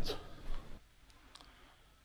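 A man's voice trailing off, then quiet room tone with a couple of faint clicks past the middle.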